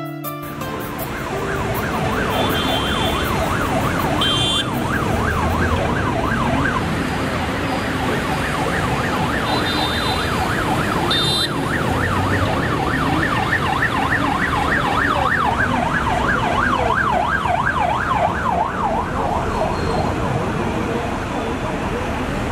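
An emergency vehicle's siren in fast yelp mode, its pitch rising and falling rapidly over and over, above the steady noise of busy city traffic.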